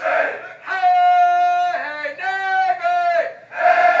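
Marine recruits shouting in unison. About a second in, a single voice breaks in with a long, drawn-out call in three held notes, and the massed shouting returns near the end.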